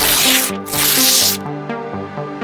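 A paper-ripping transition sound effect in two loud tearing strokes, the first about half a second, the second nearly a second long. Electronic background music with a steady beat plays underneath.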